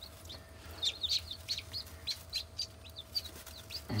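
Newly hatched chicken chicks peeping: a quick run of short, high cheeps, several a second.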